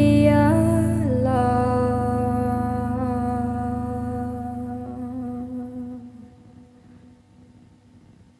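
A woman's voice humming a long wordless note over a sustained low keyboard chord as a song ends. The note steps down in pitch about a second in, and voice and chord fade out by about six seconds in.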